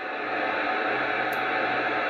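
Amateur radio FM receiver hiss on the satellite channel: steady noise from the radio's speaker between transmissions, with a faint low hum joining about a second in.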